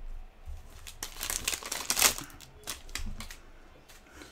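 Foil wrapper of a trading-card pack crinkling as it is handled, in irregular crackles that are loudest from about one to two seconds in and then die down.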